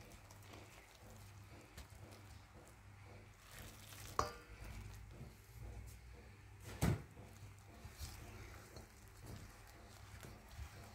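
Wooden spoon stirring hot water into flour and margarine in a stainless steel bowl: faint mixing, with two sharp knocks of the spoon against the bowl, about four seconds in and about seven seconds in.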